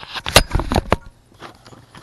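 3D-printed plastic hat clips and a phone being picked up and handled on a desk: a quick run of hard clacks and knocks in the first second, one sharper than the rest, then a few faint ticks.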